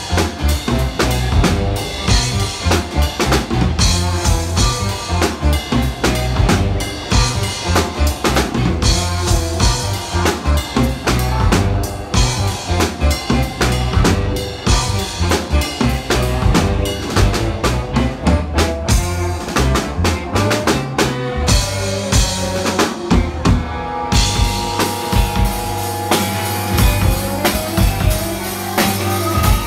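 A live band playing an instrumental jam: a drum kit with a busy kick and snare beat under electric bass and electric guitars.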